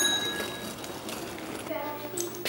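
A bicycle bell's ring dying away over a faint, steady noise, with a short voice near the end.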